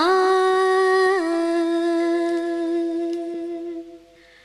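A female voice holding one long sung note in a Carnatic-style Malayalam film song, dropping slightly in pitch about a second in and fading out near the end.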